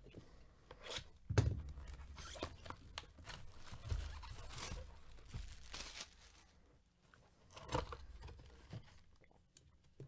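Plastic shrink-wrap being torn and crinkled off a cardboard trading-card box, and the box then opened, in irregular rips, rustles and sharp knocks. The loudest rip comes about a second and a half in, with another burst later.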